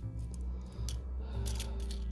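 Cupronickel 50p coins clinking against each other as they are picked up and stacked in the hand: several light, sharp metallic clicks, over background music.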